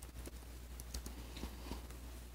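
Faint key clicks on a System76 Darter laptop keyboard, about six light taps spread over two seconds, over a low steady hum.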